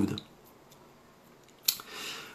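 A pause in a man's speech: the end of a word, then quiet, then a short mouth click and an intake of breath near the end as he gets ready to speak again.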